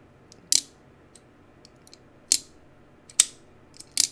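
Folding knife flipped open and shut by hand: four sharp metallic clicks as the blade snaps out of its detent and locks, or closes, with a few faint ticks in between.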